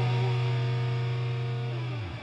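A heavy metal band, recorded live, holds the final chord of a song on distorted electric guitars, ringing steadily and starting to die away near the end.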